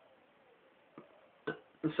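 A pause in a man's speech: faint hiss with two brief soft clicks, about a second and a second and a half in, then his voice resumes near the end.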